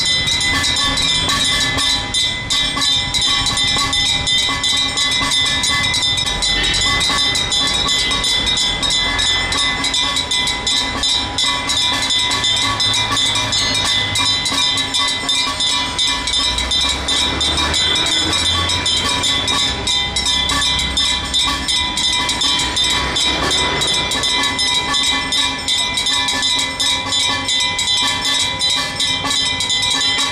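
Brass temple bells clanging rapidly and without pause, their ringing tones held steady over the fast strikes.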